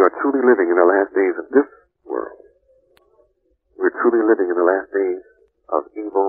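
A person speaking, with a thin, tinny sound as over a radio or old tape, pausing about halfway through.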